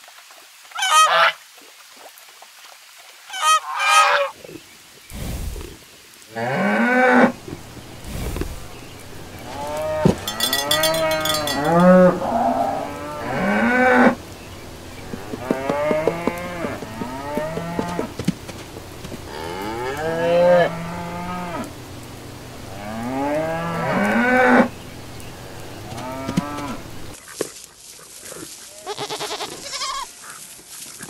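Domestic geese honking, a few short calls in the first few seconds. Then cattle mooing: a string of long, low moos, some overlapping, through most of the rest.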